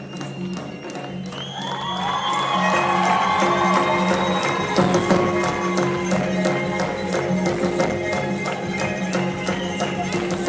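Live band music: evenly repeating hand-drum taps over steady low notes, with a bending melodic lead coming in about a second and a half in and the music growing louder.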